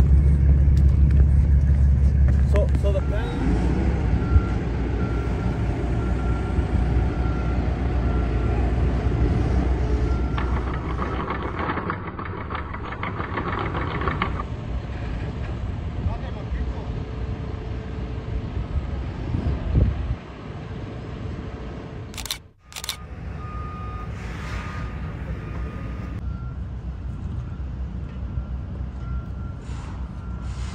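Heavy diesel equipment running on a work site, loudest in the first few seconds, with a backup alarm beeping repeatedly. The sound changes abruptly a few times, and there are voices in the background.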